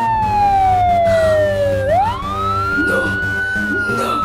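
Police siren wailing over background music: one tone slides slowly down in pitch, sweeps quickly back up about two seconds in, holds briefly and begins to fall again.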